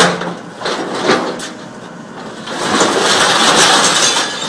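Hydraulic scrap shear working a pile of scrap steel. A sharp metal clank at the start is followed by a few lighter knocks. From about two and a half seconds in comes a loud, continuous crunching and scraping of metal as the jaws bite and drag through the scrap.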